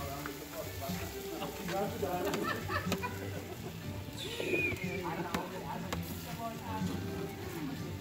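Background voices of several people talking, faint and indistinct, with some music and a few light clicks.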